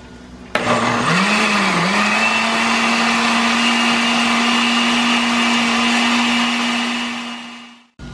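Countertop blender with a glass jar grinding whole tomatoes, green chiles, onion and garlic into salsa. It starts abruptly about half a second in, its pitch dips twice at first as it chops the whole tomatoes, then runs at a steady high whine until it fades out near the end.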